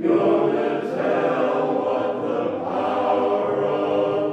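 Men's chorus singing a cappella in close harmony, the voices coming back in together at the very start after a brief pause and then holding a steady level.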